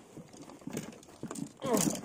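Faint rustling of fabric and bags with a few light knocks as gear and clothing are handled, followed by a brief voice near the end.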